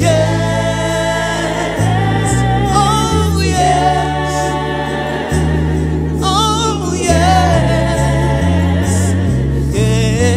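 Gospel worship song sung by a small group of voices, a lead with backing singers, singing "yes, yes, yes" over low held bass notes that change every second or two.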